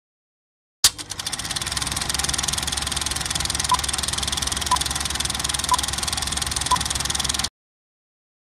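Film projector running with a rapid mechanical clatter, starting with a click about a second in and cutting off suddenly near the end. Over it come four short countdown-leader beeps, one a second.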